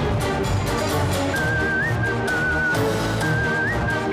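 Background music with a steady beat, joined about a second in by a high, wavering whistled melody.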